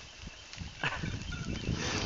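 A person's short laugh about a second in, with fainter laughing sounds near the end.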